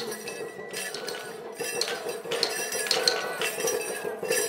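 Metal rings on festival iron staffs (kanabō) jingling and clinking in separate, irregular clinks as they are shaken and tapped.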